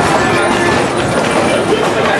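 Passenger train coach rolling along the track: a steady running noise of wheels on rails, heard from inside the car through an open window.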